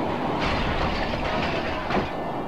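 Aircraft engine noise on a carrier flight deck: a steady, dense mechanical rumble with no clear beat, growing fuller about half a second in.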